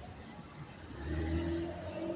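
A car driving past on the street, its engine hum growing louder about a second in and holding steady.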